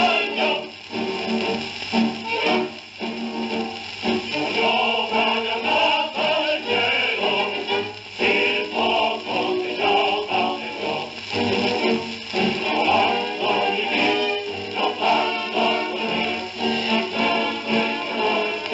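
An old Italian air force song sung in Italian, with instrumental accompaniment, going on without a break.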